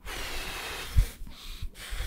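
A man blowing a steady stream of air through his lips close to the microphone, showing the continuous blowing of a trumpeter's circular breathing. About a second in a puff of air bumps the microphone, followed by a few shorter breaths.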